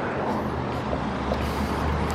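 A car driving past close by, a steady low engine and tyre noise.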